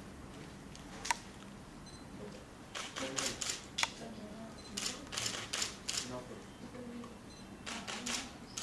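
Camera shutters clicking, in quick runs of three or four shots with single clicks between.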